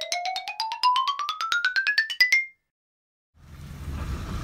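Transition sound effect: a quick rising run of about two dozen short struck notes, like a xylophone glissando, climbing steadily over two and a half seconds and then cutting off into silence. A rushing noise starts near the end.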